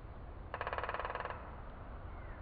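A bird's rapid rolling trill lasting under a second, starting about half a second in, over a steady low outdoor background. Faint short chirps of birds follow near the end.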